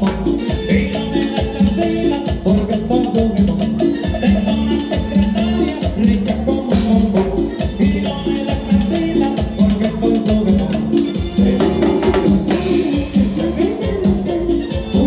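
A live Latin dance band plays an instrumental passage, with timbales and cymbals driving a steady, dense percussion beat.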